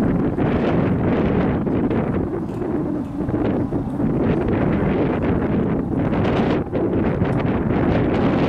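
Wind buffeting the microphone: a steady, loud rumble with no pauses.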